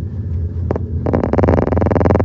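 Street noise: a steady low rumble, joined about a second in by a rapid buzzing rattle with a fast, even pulse.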